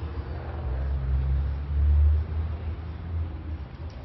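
A vehicle engine running: a low, steady rumble that peaks about two seconds in and then fades away.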